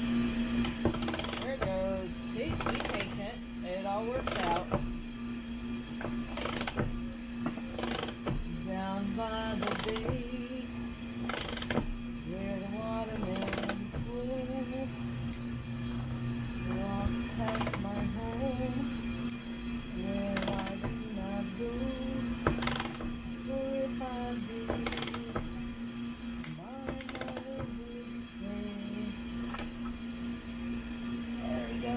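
A ratchet wrench clicking in short bursts every second or two as bolts are tightened, over a steady hum from a running air-conditioning unit. A song with singing plays in the background.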